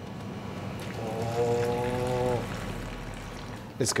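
A man's voice humming one long, steady "mmm", about a second and a half long, over a steady low background hum.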